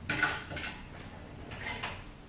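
Kitchen handling noises: a cabinet door knocking shut near the start, then a few lighter clicks and scrapes as a packet is handled.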